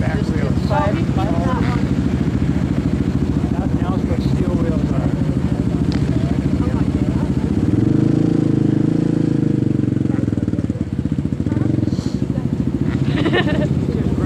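Racing quad (ATV) engine running steadily on an ice track, with the engine note swelling louder and the revs rising and falling about eight to ten seconds in.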